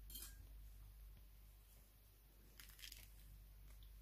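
Near silence with a few faint, brief clicks and rustles from gloved hands cutting a lemon in half with a knife.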